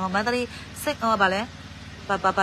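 A woman's voice talking, over a steady low hum.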